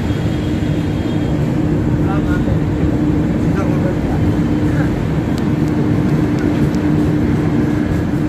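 Passenger train rolling slowly into a station: a steady rumble with a constant hum running under it, and faint voices in the background.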